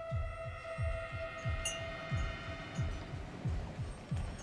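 Film score sound design: a low pulsing throb, about three thumps a second, each dropping in pitch, under a steady sustained drone.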